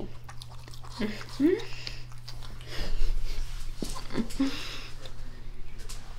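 A woman laughing briefly, then chewing a mouthful of cookie.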